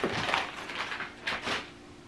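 Plastic mailer packaging rustling and crinkling as it is handled, in irregular crackles with a sharper one at the very start.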